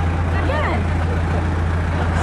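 A steady low hum, like an idling engine or electrical drone, with a short vocal sound about half a second in.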